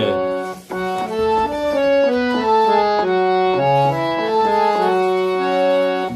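Harmonium playing a short melodic phrase in Thaat Asavari, with F# as the tonic, one sustained reedy note after another stepping up and down at about two to three notes a second.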